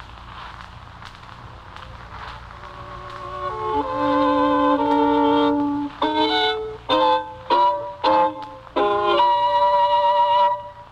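Violin playing with vibrato: a quiet opening, then sustained notes from about three seconds in, then a run of short, sharply started notes and chords that to the listening child sound like wrong notes, which he calls dissonant chords.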